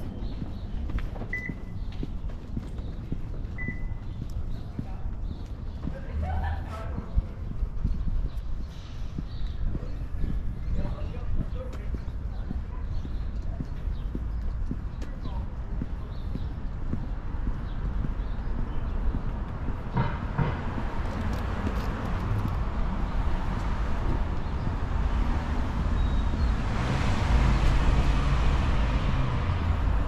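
Footsteps walking on a concrete sidewalk over steady street ambience with a low wind rumble on the microphone. Two short high chirps come in the first few seconds. Traffic noise swells near the end.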